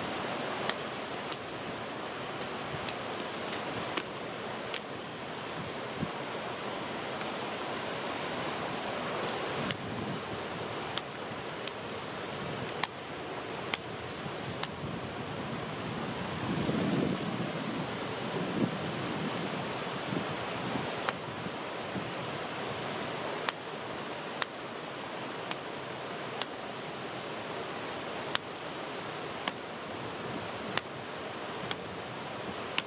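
Steady rushing wind noise, swelling for a few seconds in the middle, with scattered single sharp knocks at irregular intervals.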